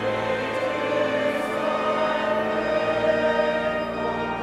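Background choral music: a choir singing long held chords.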